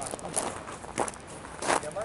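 A few short, sharp knocks, the clearest about a second in, followed near the end by a brief voice.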